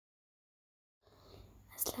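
Silence for the first second, then a faint hiss with a low hum, and near the end a short breathy, hissing syllable as a voice begins to speak.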